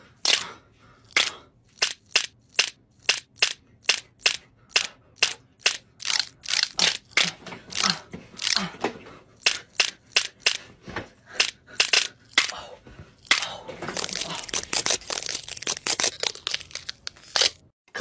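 Joints being cracked: a long run of sharp pops and cracks, about two a second, coming thicker and faster for the last few seconds before stopping.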